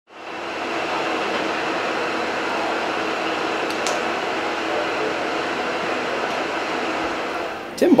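Steady, even background din with faint voices mixed in. It rises quickly at the start and drops away just before the end.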